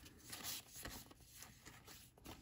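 Faint rustle and slide of cardboard baseball cards being moved between two hands.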